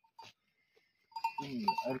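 A small livestock bell on one of the flock clinks a few times as the sheep walk, each clink a short ring. A voice starts up about a second in.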